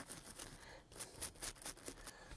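Toothbrush bristles scrubbing the earpiece speaker grill on a smartphone's glass front, a rapid series of faint scratchy strokes. The brush is wet with rubbing alcohol and is clearing earwax and grime out of the grill's tiny holes.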